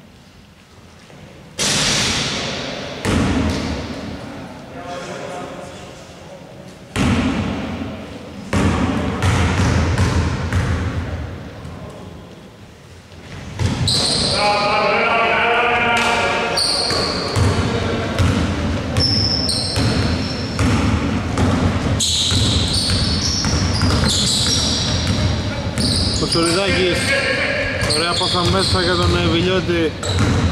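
Basketball bouncing on a hardwood gym floor, echoing in a large hall: a few separate bounces at first, then about halfway through, busy open play with high, short sneaker squeaks and players' shouts.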